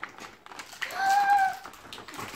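A single short, high-pitched voice-like sound around the middle, held at nearly one pitch for under a second. Light clicks of a cardboard advent calendar and its small packets being handled sound around it.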